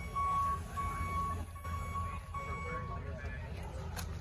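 Electric city bus's door warning beeper sounding about four half-second beeps of one high pitch as its doors open, over the bus's low steady hum.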